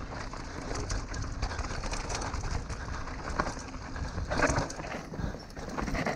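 Mountain bike rolling fast down a dry dirt and gravel trail, heard from a camera on the rider: a steady rush of wind and tyre noise with frequent small clicks and rattles from the bike, and a louder surge about four and a half seconds in.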